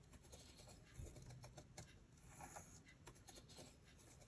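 Faint scratching of a pen tip on paper as a plastic Spirograph wheel is driven around its ring, with light irregular clicks.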